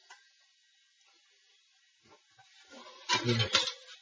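Faint scratching of a pencil drawing along a wooden T-square, then a plastic set square scraping and knocking as it is slid over the paper onto the T-square near the end.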